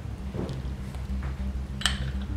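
A single light porcelain clink near the end as the lid is set on a gaiwan, over soft background music with low, steady bass notes.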